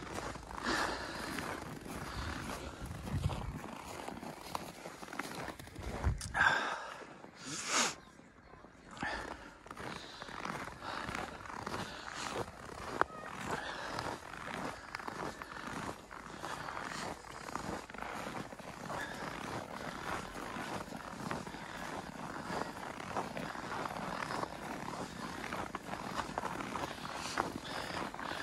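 Footsteps crunching on packed snow as several people walk along a snowy path, an uneven run of short crunches with a brief lull about eight seconds in.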